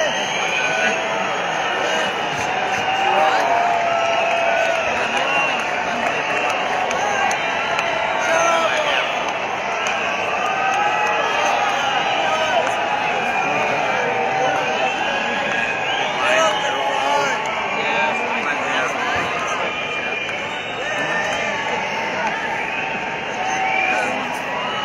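Large stadium crowd: many voices talking and calling out at once, with scattered cheering, and no music playing.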